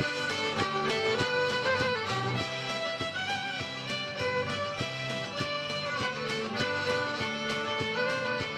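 Fiddle playing a lively melody on stage, with a steady beat underneath.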